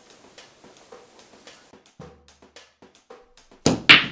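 Faint scattered clicks, then near the end a pool break shot: two loud sharp cracks close together as the cue ball smashes into the racked billiard balls and they scatter.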